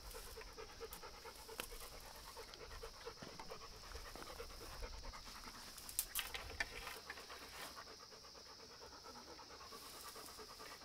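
A Rottweiler panting steadily in a quick, even rhythm. A few sharp clinks of chain-link fence wire being handled come about six seconds in.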